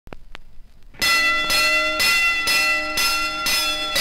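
Faint record surface crackle and clicks. Then, about a second in, a bell starts ringing, struck about twice a second with a sustained ringing tone, as the opening of a 1959 pop record.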